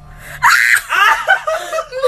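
A person bursting into loud laughter about half a second in, a breathy shriek followed by a run of short, quick laughs.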